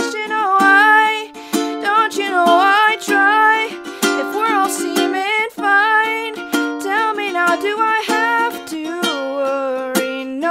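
A young woman singing a pop melody with vibrato, accompanied by her own steadily strummed ukulele chords.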